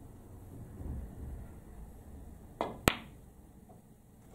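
A snooker shot: the cue tip strikes the cue ball with a soft knock about two and a half seconds in, and a fraction of a second later the cue ball hits a red with one sharp, loud click, sending the red toward the corner pocket.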